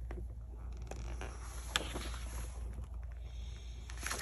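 A paper page of a large printed book being turned by hand: soft rustling with a few crisp clicks, the sharpest a little under two seconds in, over a low steady hum.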